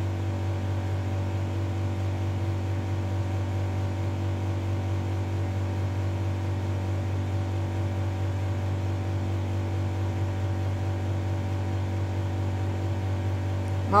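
Air conditioner running: a steady low hum with several faint, even tones above it, unchanging throughout.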